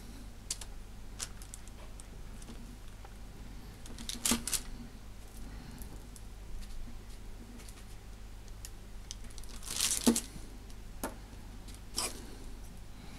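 A blade chopping the uneven edges off a soft block of epoxy putty on baking paper: faint scattered clicks and taps, with two louder, longer sounds about four and ten seconds in.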